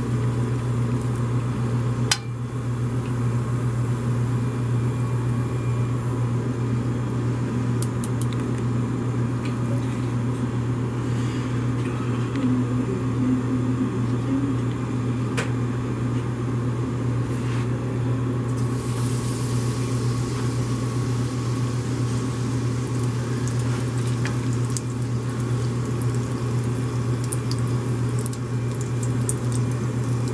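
Battered Oreos frying in a pan of hot oil, sizzling and bubbling over a steady, loud low kitchen hum. About two-thirds of the way through a sharper, brighter sizzle rises for a few seconds as another battered Oreo goes into the oil, and a couple of sharp metal clicks sound earlier on.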